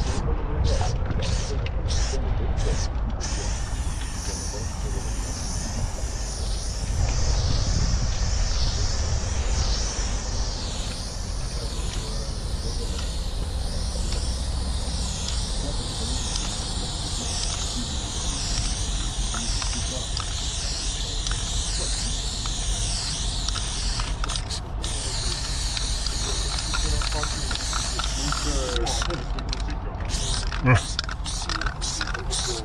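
Aerosol spray paint can hissing against a wall: a few short spurts first, then a long, nearly unbroken spray while a solid colour fill is laid down, with short spurts again near the end. A steady low rumble runs underneath.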